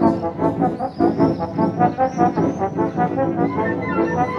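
Wind band playing live, brass and saxophones over a regular pulsing beat.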